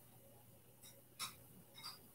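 Near silence: room tone with a faint steady hum and three brief faint clicks, the loudest about a second and a quarter in.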